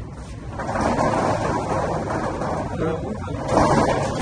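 Indistinct, overlapping voices of a small crowd of people, getting louder about half a second in.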